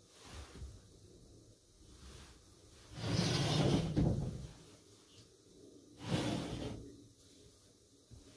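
A paper-covered sliding door at a tea room's host entrance is slid open in its wooden track. It makes a rushing slide about three seconds in that lasts just over a second. A shorter, quieter sliding sound follows about three seconds later.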